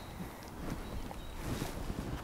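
Faint outdoor background noise, a low rumble and hiss with no distinct event standing out.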